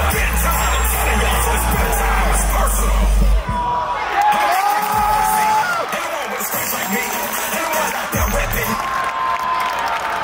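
Cheer routine music with a heavy bass beat, and a crowd cheering and whooping over it. The bass drops out about three and a half seconds in, and the cheering carries on with long, high-pitched screams.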